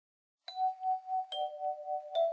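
Recorded doorbell chime: a ding-dong of two struck notes, the first about half a second in and a lower one just over a second in. Both ring on together with a pulsing waver.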